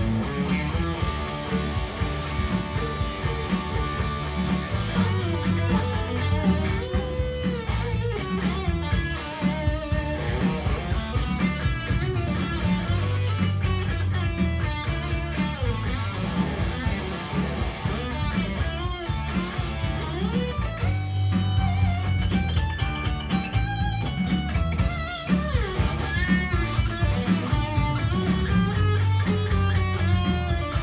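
Live band playing, led by an electric guitar solo: a lead line of bent notes over a steady bass-and-drums backing.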